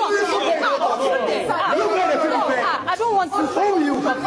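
Several people talking over one another at once in a group argument, voices tangled together with no single speaker standing out.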